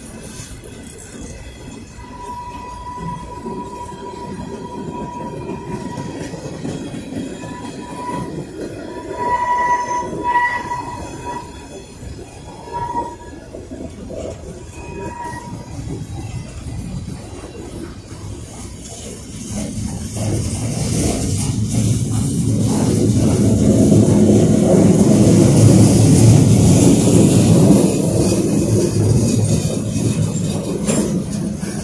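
Freight cars of a train rolling past at close range, with a steady rumble and clatter of wheels on rail. A thin, high wheel squeal comes and goes through the first half. The rolling noise grows louder in the second half.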